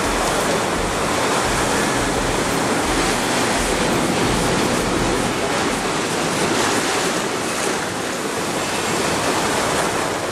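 Surf breaking and washing over shoreline rocks: a steady, loud rush of waves.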